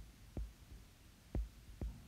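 Stylus tip tapping on a tablet's glass screen while handwriting: three soft, separate taps with a dull low knock under each.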